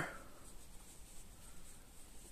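Faint rustle of yarn being worked with a crochet hook, soft scratching with a couple of small handling sounds.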